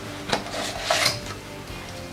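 Plastic glue bottle and clear plastic ruler being handled over a tabletop: two light clicks, about a third of a second and a second in, with some scratchy rubbing between them.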